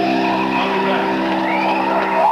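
Harmonica playing held chords and bending notes over a live country band, with a sliding note that rises about one and a half seconds in.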